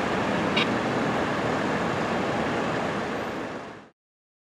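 Steady street noise with a low engine hum from vehicles, fading out near the end.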